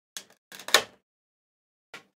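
Clear plastic blister insert of a trading-card collection box crackling and clicking as a hand presses and pulls at it. There are a few short crackles in the first second, the loudest about three quarters of a second in, and a faint click near the end.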